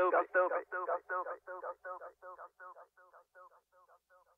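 A rapped vocal hook: the word "dance" repeated rapidly, about five times a second, with no beat under it. It sounds thin and fades out to silence about three seconds in, ending the track.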